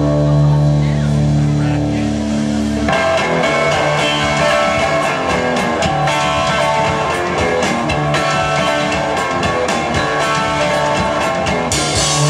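Live rock band instrumental intro on guitar and drum kit: a guitar chord rings and is held, then about three seconds in the drums and strummed guitar come in together with a steady rock beat.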